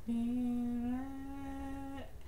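A woman humming one long held note without words, which steps slightly higher about a second in.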